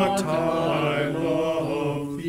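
Mixed-voice church virtual choir singing sustained notes, the separately recorded voices blended together, with piano accompaniment.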